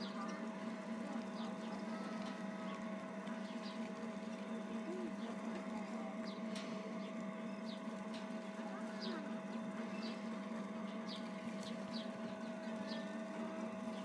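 Small chain swing carousel running with a steady hum, with scattered light clicks from its chains and seats as it turns.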